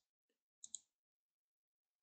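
Near silence with a faint computer mouse click: a quick pair of ticks about two-thirds of a second in.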